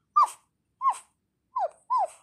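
Four short, high-pitched puppy-like yips, each falling in pitch, made by a person voicing a toy dog.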